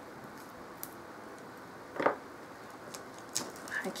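Faint fingernail clicks and rustles from picking at the cellophane wrap on a small cardboard tarot-card box, against quiet room tone, with one brief, louder soft sound about halfway through.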